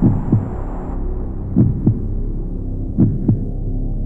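Heartbeat-like sound effect in a soundtrack: pairs of low thumps, lub-dub, repeating about every one and a half seconds over a steady low hum.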